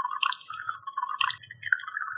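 Liquid poured in a steady stream from a ceramic teapot into a ceramic bowl, splashing and gurgling. Its pitch rises as the bowl fills.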